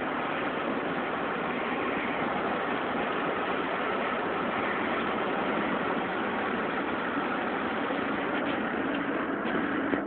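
Steady engine and road noise of a vehicle driving along, heard from inside the cabin.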